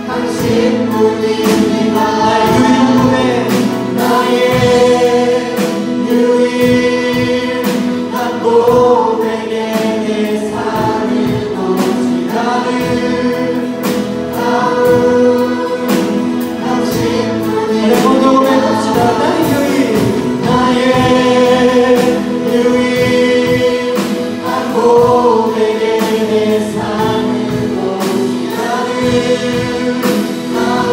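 Church praise team of young men and women singing a Korean worship song together, accompanied by strummed guitar with a steady beat.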